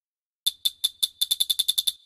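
Programmed trap hi-hat roll from a drum-kit sample pack: a string of short, bright hits with a metallic ring, starting a half-second in at about five a second and speeding up to about ten a second.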